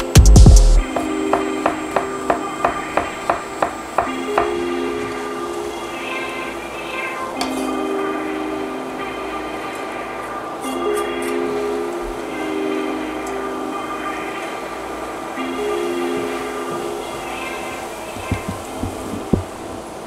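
A chef's knife chopping on a wooden cutting board, about three quick strokes a second, for the first few seconds, over background music. After that, garlic and shallot cook in olive oil in a stainless steel pan with a faint hiss.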